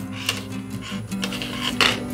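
Soft background music with sustained low tones, under light rubbing and handling of plastic model-kit parts and a thin wire, with one sharp click near the end.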